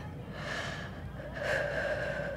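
A young girl taking deep breaths through her open mouth to steady her nerves: two long breaths, the second louder and longer.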